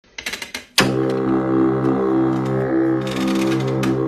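A few light clicks, then a hammer knocks onto a home electronic keyboard's keys about a second in, and a low keyboard note sounds and holds steady, unchanging, for about three seconds.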